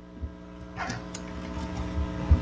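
Steady electrical mains hum on the meeting-room audio feed, with a soft thump near the start and a brief faint rustle about a second in.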